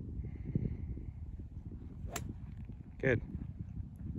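A golf driver swung once at speed, heard as a single short, sharp sound about two seconds in.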